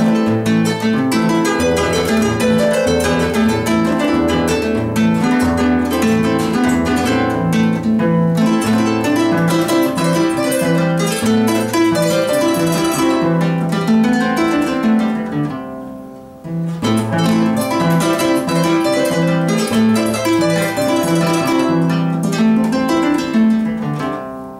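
Peruvian harp (arpa peruana) played solo, a plucked melody in the upper strings over a bass line. Near the two-thirds mark the playing briefly dies away at the end of a phrase, then picks up again.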